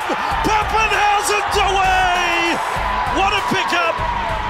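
Excited television commentator's drawn-out call over a backing music track.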